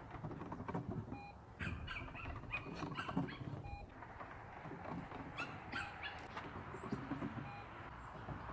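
Small birds chirping in short clusters of quick calls, over a quiet outdoor background with faint low rustles.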